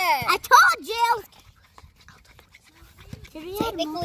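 A child's high voice making wordless sounds that slide up and down in pitch, in two short stretches with a quieter gap between.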